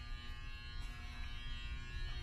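Steady electrical hum with a faint buzz made of several fixed tones, over a low, uneven rumble.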